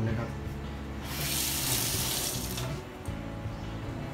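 Water running briefly from a kitchen tap: a steady hiss lasting about a second and a half, stopping abruptly.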